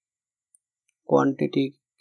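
Dead silence broken by a single faint computer-mouse click about half a second in, then a man's voice starts speaking about a second in.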